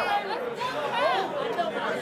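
Crowd chatter: several voices talking at once, none of them leading.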